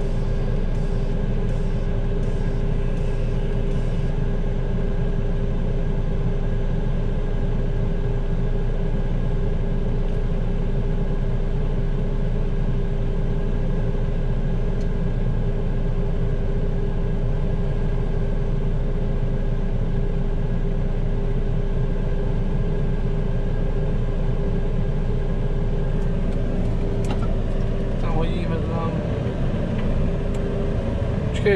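JCB telehandler's diesel engine idling steadily, heard inside the cab, with a constant hum running underneath.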